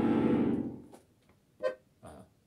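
Three-row bayan (Russian chromatic button accordion) sounding a full chord that fades out after about a second, followed by one short note near the end.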